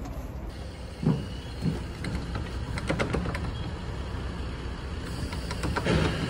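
Steady low rumble of street traffic, with a few knocks and thumps about a second in, again around three seconds, and near the end.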